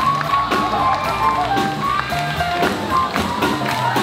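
Live swing jazz band playing an up-tempo tune: horns holding notes over a steady, driving drum beat.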